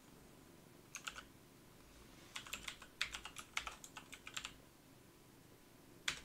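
Computer keyboard typing: a few keystrokes about a second in, then a quick run of about a dozen keystrokes as a search term is typed.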